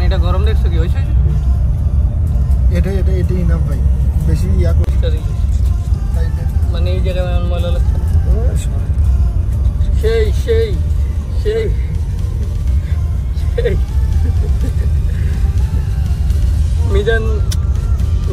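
Steady low rumble of a bus driving on a highway, heard from inside the passenger cabin, with voices talking on and off over it.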